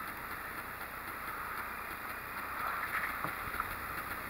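Quiet, steady outdoor background noise from a kayak sitting on open water, with faint water sounds and nothing standing out.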